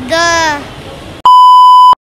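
A woman's voice saying 'the', looped in the edit, then a loud, high, steady beep sound effect lasting well under a second that cuts off abruptly into dead silence.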